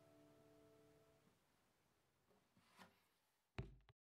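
The last chord of an acoustic guitar dies away in the first second or so, leaving near silence with a few faint handling noises. Near the end there is one sharp knock as the recording device is handled, and then the sound cuts off suddenly.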